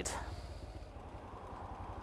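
Kawasaki GPZ 500 S parallel-twin engine running quietly at low revs, a faint steady low pulse.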